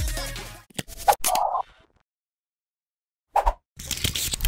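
An electronic logo-sting music tail fades out within the first second. A few short clicks and scratch-like sound-effect hits follow, then about a second and a half of silence. Short effect hits start again near the end.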